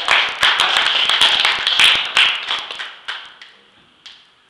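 Hands clapping, dense enough to be several people applauding together. It thins to a few last claps about three seconds in.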